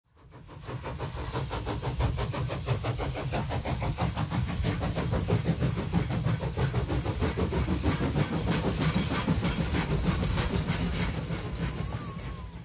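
Steam locomotive chuffing at a rapid, even beat, with hissing steam and a low rumble. It fades in at the start and fades out near the end.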